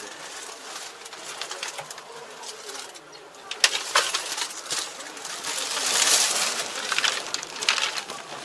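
Sharp clicks and knocks from a tractor cab's door and fittings being handled as someone climbs out of the cab, with a swell of rustling about midway.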